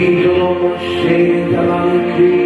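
A man's voice chanting long held notes in wordless syllables over a soft, sustained ambient music bed, the pitch shifting every half second or so.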